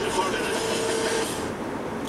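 Cabin noise of a Mercedes-Benz Sprinter 313 CDI van on the move: its four-cylinder turbodiesel engine and road noise running steadily. A held hum drops away a little over halfway through.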